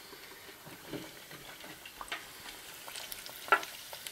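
Breaded patties deep-frying in hot oil in an electric deep fryer: a faint steady sizzle with scattered small crackles.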